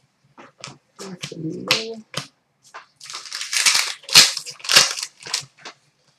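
Trading cards being handled at a glass counter: scattered light clicks and taps, then about halfway through a quick run of crisp brushing, sliding and flicking noises as cards are slid off the stack and riffled through.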